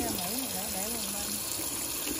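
Kitchen tap running a steady stream of water onto shredded green papaya in a plastic colander, rinsing it in the sink. A voice is heard quietly over the water for the first second and a half.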